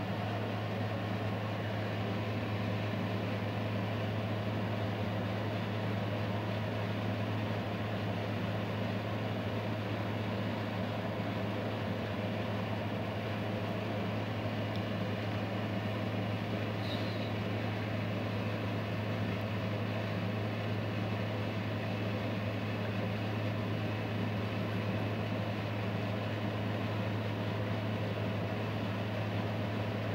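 Steady low hum with a constant background hiss that does not change.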